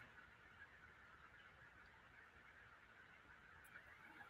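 Near silence: faint steady room tone on a video call.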